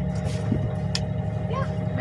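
Sailboat's auxiliary engine running steadily under way, a low, even drone with a faint steady hum above it. A single short click comes about halfway through.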